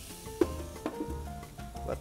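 Thin steak sizzling on a hot electric countertop grill, with soft background music and a couple of light clicks.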